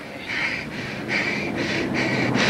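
Rapid, heavy breathing in short noisy puffs, about three a second, over a low background murmur.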